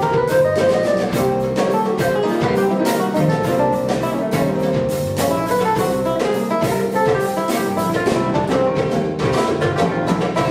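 Live instrumental fusion-jazz improvisation by a small band: electric keyboard, guitar and bass under a busy beat of drum kit and hand percussion.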